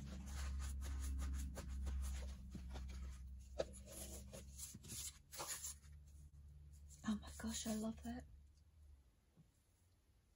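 Hands handling and smoothing layered paper and fabric on a cutting mat: a run of quick rustles, scratches and light taps. There is a steady low hum underneath that fades out near the end, and a short murmured vocal sound about seven seconds in.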